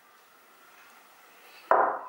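Mostly quiet while oil is poured from a glass measuring cup into chocolate cake batter, then near the end a sudden short clunk as the glass cup is set down on the table.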